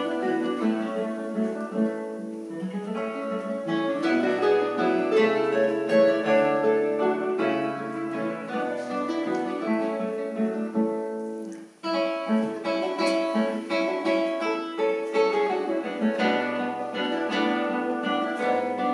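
Classical guitar quartet playing an arrangement of an Irish harp tune, many plucked notes and chords interweaving. The playing breaks off briefly about two-thirds of the way through, then resumes with crisp plucked chords.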